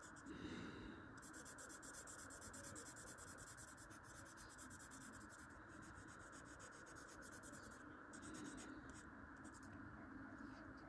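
Felt-tip permanent marker rubbing faintly on paper in quick, short strokes as it fills in a black area of an ink drawing.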